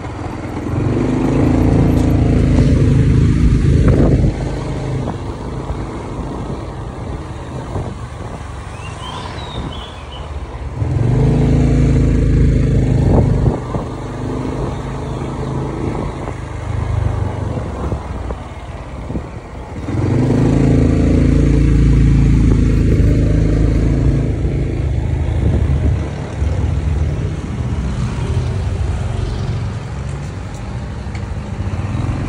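Motorbike engine and wind noise heard from the pillion while riding. The engine pulls harder three times, about ten seconds apart, with quieter stretches of coasting between.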